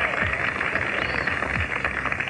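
Audience applause on a vintage country radio broadcast recording, welcoming an introduced performer; the sound is band-limited and thin, like old AM radio.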